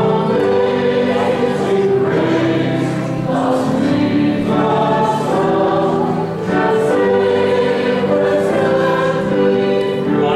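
Small mixed church choir singing a slow hymn, its voices holding long notes.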